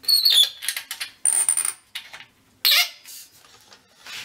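Metal squeaks, scrapes and clinks from the clamp hardware on a telescope pier's metal collar as the capstan-style clamp bolt is worked by hand: a high squeak at the start, a longer scrape with a thin high squeal about a second in, and a sharper clink near the three-quarter mark.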